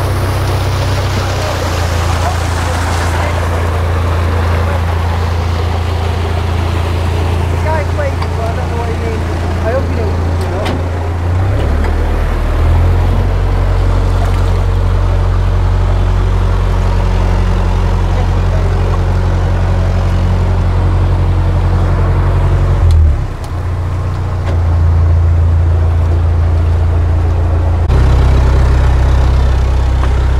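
A narrowboat's diesel engine running at low revs while the boat is manoeuvred into a canal lock. Its note shifts abruptly about a dozen seconds in, again about two-thirds of the way through, and rises near the end. For the first part, water rushing from the lock overflow sounds over it.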